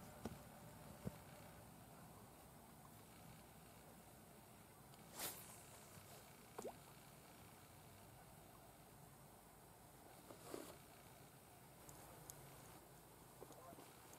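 Near silence: faint outdoor quiet, broken by a few brief soft sounds, a short swish about five seconds in and another faint one about ten seconds in.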